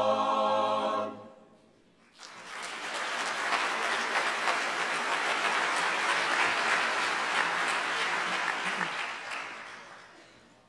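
A male a cappella choir holds its final chord, which cuts off about a second in. After a short silence an audience breaks into applause, which carries on steadily and then fades away near the end.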